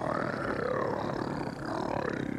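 The Predator's roar, a film creature sound effect: one long, wavering bellow that rises and falls in pitch with its mandibles spread, easing off near the end.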